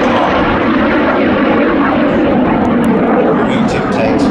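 Rolls-Royce Viper 102 turbojet of a BAC Jet Provost T.3A flying past, loud and steady.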